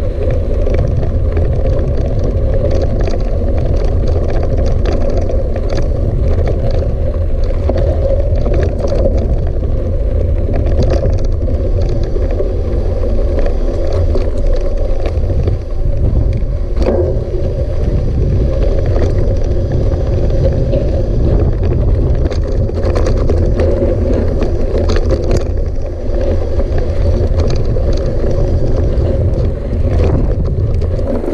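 Hardtail mountain bike rolling over a loose gravel dirt track: a steady rumble of tyres and wind buffeting the handlebar-mounted microphone, with scattered clicks and rattles from the bike over the stones.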